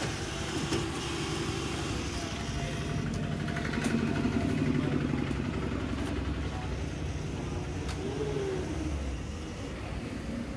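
Konica Minolta production printer running steadily while printing 300 gsm card stock at 120 sheets a minute, a continuous mechanical whir of feeding and ejecting sheets.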